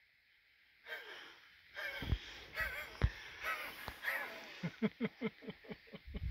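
A man's excited exclamation, then a quick run of breathy laughter, about six short pulses, near the end. A single sharp knock sounds about three seconds in.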